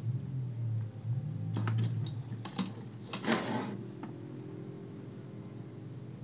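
Handling noise from an unplugged electric hand planer being turned over in the hands: a few sharp clicks of its plastic and metal body about one and a half to two and a half seconds in, then a brief scraping rub a little after three seconds.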